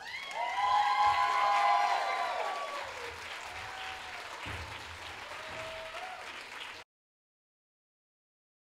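Audience applauding and cheering at the end of a performance, the cheers loudest in the first couple of seconds, then the clapping fades and cuts off abruptly about seven seconds in.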